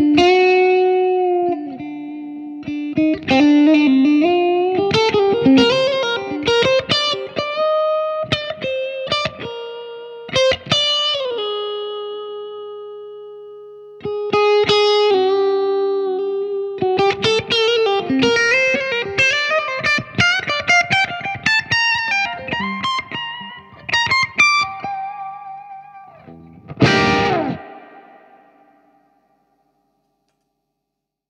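Electric guitar played through a Marshall Bluesbreaker reissue overdrive pedal, giving a lightly driven tone: a slow single-note melody with held and bent notes. Near the end comes a strummed chord that rings out and fades away.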